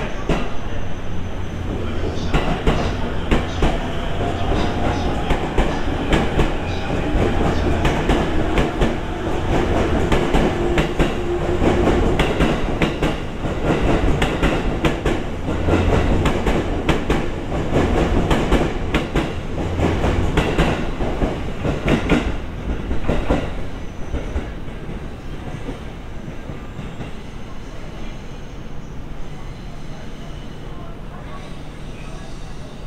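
E257 series electric train running past close to the platform, its wheels clacking over the rail joints in rapid clusters of clicks. A faint whine sits underneath. The sound eases off over the last several seconds.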